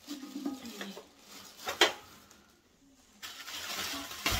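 An electric contact grill and its metal cooking plates being handled: one sharp clack about two seconds in, then crinkling plastic wrapping from about three seconds in.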